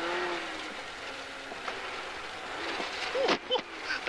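Rally car engine and tyre noise on a snowy road, heard inside the cabin as the car slows for a corner. A steady engine note fades about half a second in as the driver lifts off. Near the end come a few brief, sharp changes in pitch.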